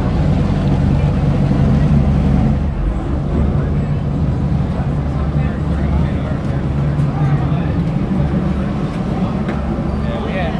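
Low steady rumble of a moored motorized raft's engine idling, easing off a few seconds in, under the chatter of a crowd.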